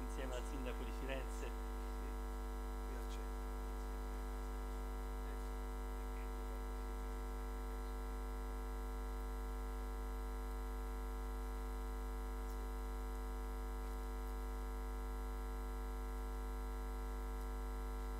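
Steady electrical mains hum with a row of even overtones, with a few faint spoken words at the very start.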